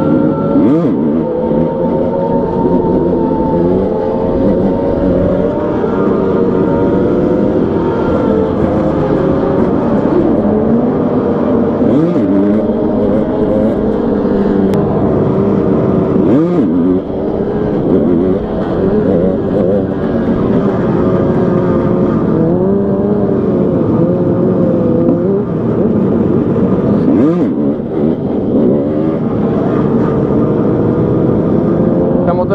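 Motorcycle engine of an orange dirt bike heard from the rider's seat, running under load through the gears. Its pitch climbs and falls with the throttle and drops sharply a few times at gear changes. Wind rush on the microphone runs under it.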